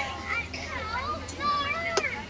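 Background voices of children talking and calling, high-pitched and not close to the microphone, with a short click at the very end.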